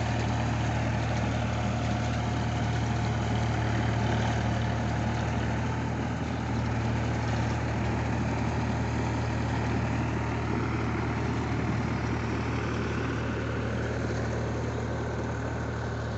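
Tractor diesel engine running steadily under load as it drives a bund ridger that forms a mud ridge along a flooded paddy field. The low, even engine hum holds throughout.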